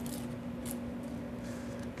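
Faint scraping of a knife blade trimming the potato-starch wafer paper off the edge of a slab of torrone, two short scrapes, over a steady low hum.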